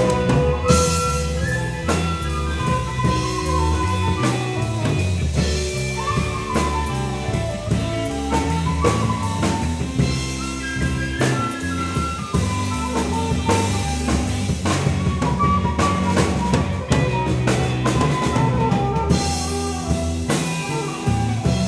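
Live rock band playing an instrumental passage: drum kit, electric bass, electric guitar and keyboards, with a lead guitar line over a steady beat and no vocals.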